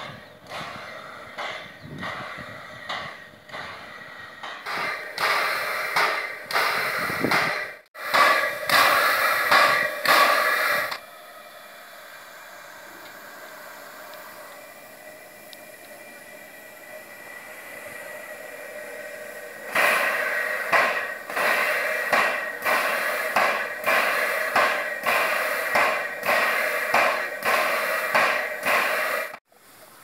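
Narrow-gauge steam locomotive exhausting in a steady rhythm of chuffs, about one and a half a second, growing louder as it works. In the middle the locomotive stands with a steady hiss of escaping steam, then the chuffing returns.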